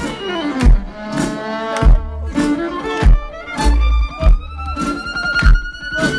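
Live amplified band music: a violin plays a melody, holding a long note near the end, over a deep bass line and a steady, punchy drum beat.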